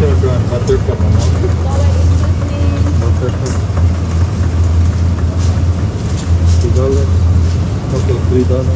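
Steady low hum of an open supermarket refrigerated display case, with faint voices and a few light crinkles of a butter pack being handled.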